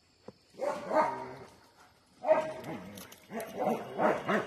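German Shepherds barking in three bouts, each fading out before the next.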